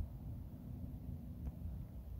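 Faint low background rumble, with a soft click about a second and a half in.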